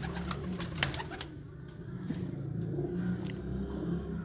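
Domestic pigeons cooing in a loft, a low steady murmur of calls, with a few sharp clicks in the first second or so.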